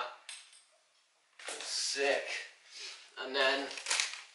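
Clinking and rattling of small hard plastic and metal parts being handled: the lighting kit's power plug and adapters. The sounds come in irregular clusters, with short wordless vocal sounds mixed in.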